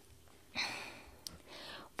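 A woman's breathy sigh: a soft exhale starts about half a second in and fades, followed by a faint click and a quieter breath.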